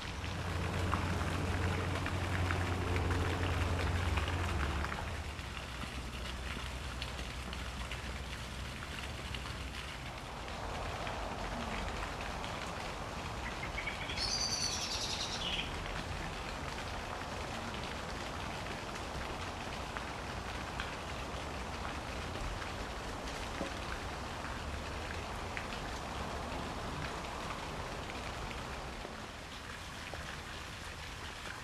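A steady hiss like rain or splashing water runs throughout. A low hum lasts for the first five seconds, and a brief high chirp comes about fourteen seconds in.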